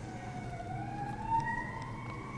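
A faint siren: a single wailing tone that rises slowly in pitch over the first second and a half, then holds steady.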